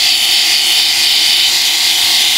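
Corded electric epilator running against the skin of a leg, a steady high-pitched whir as it plucks out the hairs.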